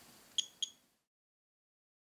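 R-tracker GR-14m Geiger counter's clicker giving two short, high ticks about a quarter of a second apart, each tick a detected radiation count.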